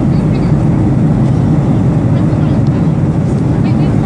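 Airliner cabin noise: a steady, loud, low drone of the engines and airflow.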